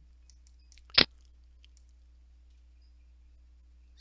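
A single sharp click about a second in, with a few much fainter ticks and a faint steady low hum underneath.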